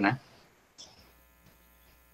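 Faint, steady electrical buzz with an even pitch, coming in about a second in after a spoken word.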